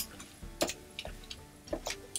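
Several scattered sharp clicks of a computer mouse and keyboard, over faint background music.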